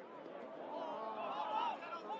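Several voices shouting and calling over one another, growing louder in the second second.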